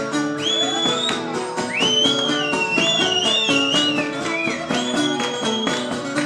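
Cretan folk music instrumental passage: a high melody line sliding and trilling between notes over plucked-string accompaniment keeping a steady beat.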